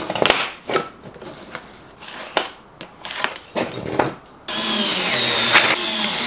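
A few light clicks and knocks of a metal hinge and screws being handled on a plywood board, then, about four and a half seconds in, a DeWalt cordless screwdriver runs steadily, driving a screw to fix the hinge to the quarter-inch plywood.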